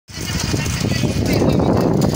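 People talking over a loud, steady background noise that is heaviest in the low range, starting abruptly.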